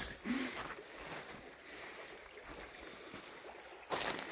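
Faint steady outdoor background noise with no distinct source, and a brief brushing sound at the very end.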